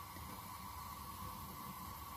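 Faint, steady hiss and low rumble of a gas oven's burner flame burning low.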